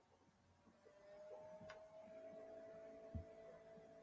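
Near silence: faint room tone with a faint steady hum that begins about a second in, and one soft low thump near the end.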